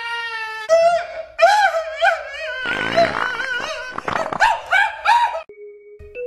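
High-pitched, wavering vocal wailing and whimpering: a steady squeal at first, then wobbling wails with a brief gargling, choking patch in the middle, cut off suddenly about five and a half seconds in.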